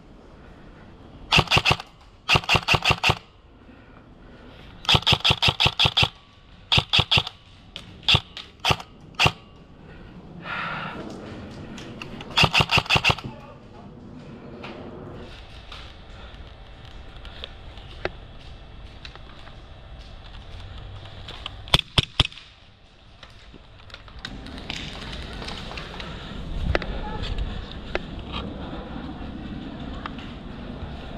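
Airsoft electric rifle (AEG) firing short full-auto bursts of rapid clicking shots. There are several bursts in the first half, then one more short burst after a pause.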